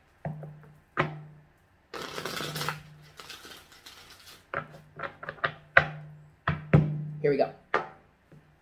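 A deck of tarot cards being shuffled by hand: a short riffle about two seconds in, then a run of sharp card taps and slaps as the deck is squared and shuffled again.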